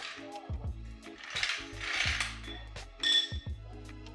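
Background music over the metallic sounds of a hydraulic floor jack being let down and pulled out from under a car, with a swell of noise in the middle and a sharp metallic clank about three seconds in.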